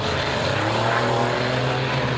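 Several enduro race car engines running at speed together, a steady drone of engine notes, with one note climbing in pitch about half a second in.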